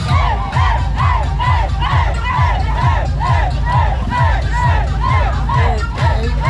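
A crowd chanting in unison, one short rise-and-fall shout about twice a second, over music with a steady bass beat.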